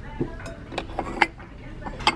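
Ceramic dishware clinking as stacked bowls and cups are handled on a glass shelf: several short, sharp clinks with a little ring in the first second and a half.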